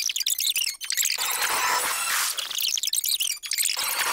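Fast stream of high-pitched electronic chirps and bleeps from a cartoon soundtrack, with short breaks about a second in and near the end.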